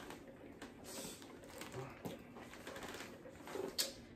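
Quiet rustling and light clicking of hands handling gingerbread house pieces and their packaging, with one sharper click near the end.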